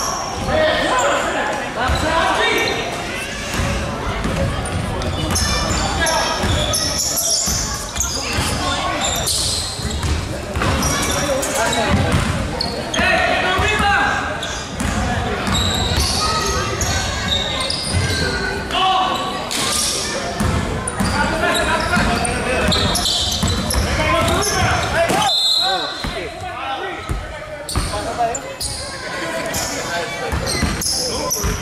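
Basketball game in a gym: a ball bouncing on the hardwood and players' voices, echoing in the large hall.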